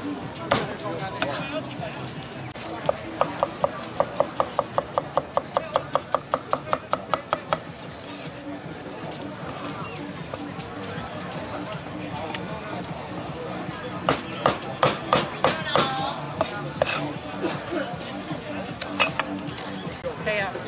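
A meat cleaver chopping cooked chicken on a thick wooden chopping block in fast, even strokes, about five a second, for a few seconds. Another, less even run of strokes comes later, over a steady background din.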